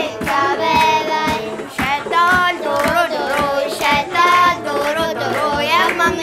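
Young girls singing a traditional Ethiopian song together, keeping time with steady hand claps.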